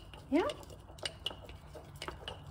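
Bamboo chopsticks stirring a thick mix of sourdough starter, flour and water in a glass mason jar, clicking against the glass a few times.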